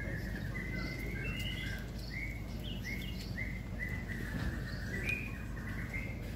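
A small bird chirping: a run of short repeated notes, about two a second in the middle, over a steady low background rumble.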